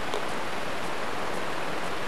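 Steady hiss of the camera microphone's background noise, even and unchanging, with no distinct sounds in it.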